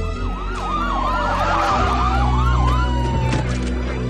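An emergency-vehicle siren yelping in rapid up-and-down sweeps, with a long falling wail alongside, fading out about three seconds in. Under it runs a deep, steady bassline that grows stronger partway through.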